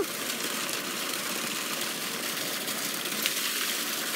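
Steady splashing hiss of water jetting from a garden-hose spout and falling onto wet ground.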